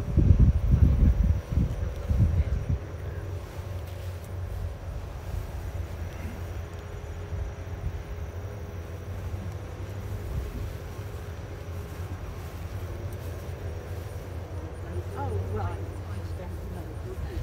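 Wind buffeting the microphone in heavy low rumbles for the first two or three seconds, then a steady low drone of distant engines, with faint voices near the end.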